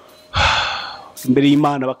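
A man's loud, breathy exhale or sigh close to the microphone, fading out within about half a second, followed by his speech starting again.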